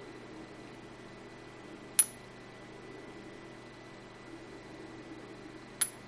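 Two sharp metallic clinks, each with a brief high ring, a little under four seconds apart: a neodymium magnet knocking inside a thick copper tube as the tube is turned. Turning the tube does not leave the magnet floating; gravity still moves it.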